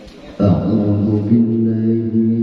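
A male qori's voice begins melodic Qur'an recitation (tilawah) about half a second in, holding one long, steady chanted note into a handheld microphone.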